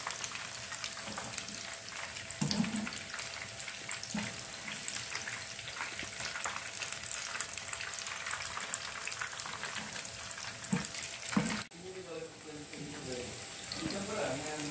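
Chicken pieces deep-frying in hot oil: a steady crackling sizzle with frequent small pops and a few short knocks. The sound cuts off abruptly about three-quarters of the way through, followed by a quieter sizzle.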